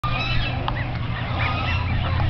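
A flock of waterfowl at a pond calling noisily, many short overlapping squawks and honks repeating throughout, loud enough that it sounds like someone's killing them.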